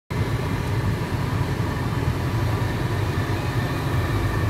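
Steady air rush in the cockpit of a PIK-20E glider in flight, a constant low noise without breaks.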